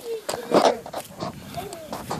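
Small children's voices: short, broken murmurs and little calls, with no steady talk.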